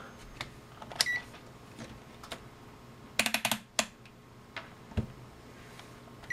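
Clicks of a Kasuntest ZT102 multimeter being switched between functions, its rotary selector and buttons clicking, with a short beep about a second in and a quick run of clicks about three seconds in.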